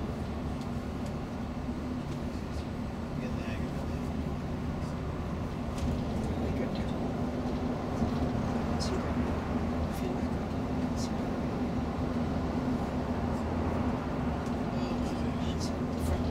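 Inside a coach travelling at motorway speed: a steady engine and road drone with a low hum holding one pitch. Faint voices of passengers come through now and then.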